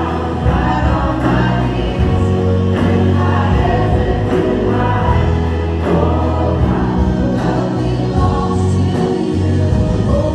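Live worship band playing a contemporary worship song: a male lead voice and female backing voices singing over acoustic and electric guitars and a steady bass, with the congregation singing along.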